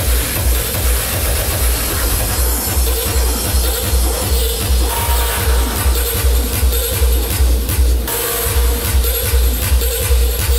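Hardstyle electronic dance music from a live DJ set. A heavy kick drum lands on every beat, about two and a half a second, under a held synth note.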